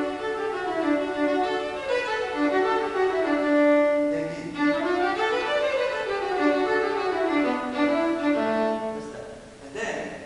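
Solo acoustic violin played with the bow: a simple melodic theme in the Mixolydian mode, in quick stepwise notes that run down, climb up and fall again.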